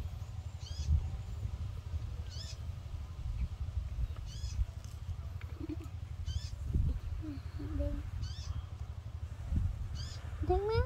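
Kitten mewing: short high-pitched mews about every two seconds, five in all, over a steady low rumble.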